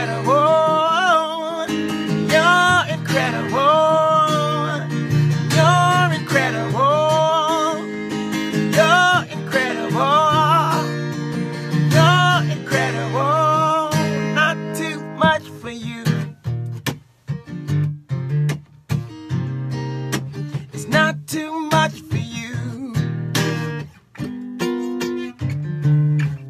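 Acoustic guitar strummed in a slow worship song, with a man's voice singing long held notes over it for roughly the first ten seconds; after that the guitar plays on alone in looser strums and plucks with short pauses.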